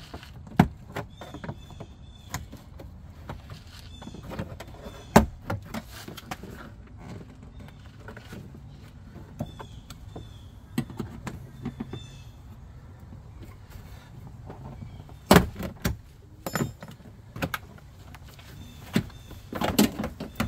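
Plastic retaining clips of a Jeep Grand Cherokee WJ door trim panel snapping loose as the panel is pried off the door with a plastic trim tool. The snaps are scattered, the loudest about five seconds in and another cluster from about fifteen seconds in, with quieter handling noise between them.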